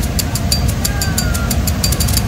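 Hot air balloon propane burner firing into the envelope during hot inflation, a steady low rush. A fast even ticking, about six a second, runs over it.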